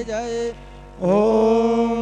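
A voice chanting a mantra in long held notes, breaking off about half a second in and starting a new sustained note at the one-second mark, over a steady low hum.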